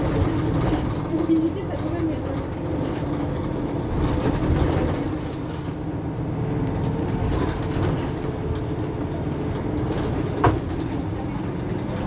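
Mercedes-Benz Citaro C2 Hybrid city bus running, a steady low diesel engine drone, with one sharp click about ten and a half seconds in.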